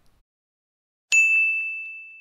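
A single bell-like ding sound effect sounds about a second in, a bright high tone ringing down over about a second and a half. It marks the checklist graphic coming up on screen.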